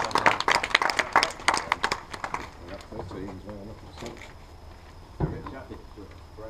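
A small group clapping in quick, sharp claps for about two and a half seconds, then dying away into scattered voices, with a single thump about five seconds in.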